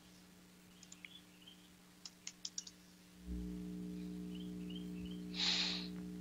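Computer keyboard keystrokes and clicks: a couple about a second in, then a quick run of about five, over a steady low electrical hum that grows louder about halfway through. A short hiss near the end.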